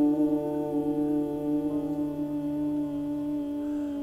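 Several people holding a steady, even-pitched hum in bhramari (humming-bee breath) pranayama; a deeper voice drops out near the end.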